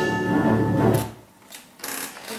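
A mixed choir holding the last chord of a sung phrase, cutting off together about a second in.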